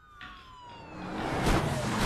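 Police car sirens wailing as police cars speed in. The siren tone falls in pitch, while a rush of car noise swells and grows loud toward the end.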